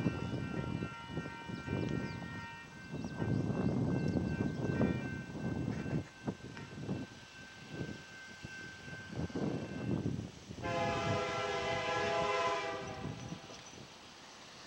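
Nathan K3HA air horn of an approaching Union Pacific SD70M locomotive, heard at a distance. One chord fades out in the first few seconds, then a louder blast of about two seconds comes near the end. Irregular low, gusty rumbling noise runs underneath.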